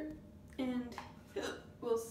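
A woman hiccuping: three short voiced hics, the first about half a second in and two more close together near the end.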